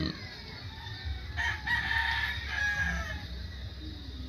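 A rooster crowing once, starting about a second and a half in and falling in pitch at the end.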